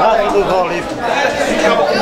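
Several people talking at once close by: overlapping crowd chatter and conversation, with no other sound standing out.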